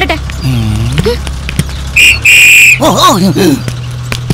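A whistle blown twice, a short blast and then a longer one of about half a second, between bits of speech.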